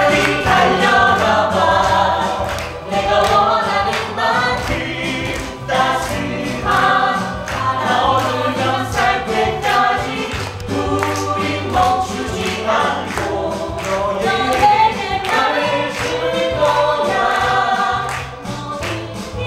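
Musical-theatre cast singing a song together, with the lead actress's voice prominent, over a backing track with a steady beat.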